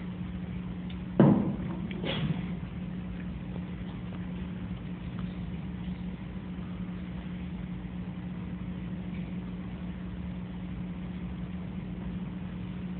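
A steady low electrical hum in a lecture hall, with a short loud thump about a second in and a fainter knock about a second after that.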